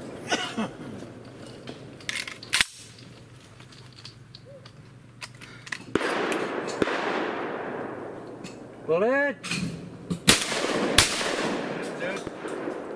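Shotgun shots at clay targets: a single sharp shot a couple of seconds in, then near the end a short shouted call followed by a pair of shots less than a second apart.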